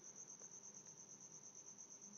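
Near silence with a faint, steady high-pitched pulsing trill, about six pulses a second.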